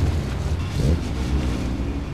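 Engines of two touring race cars, an Opel Kadett and a BMW M3, running at low revs as they roll slowly away: a steady low drone with a brief rise in pitch about a second in, fading toward the end.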